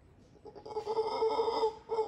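Howler monkey calling: one loud call of a little over a second, then a short second note near the end.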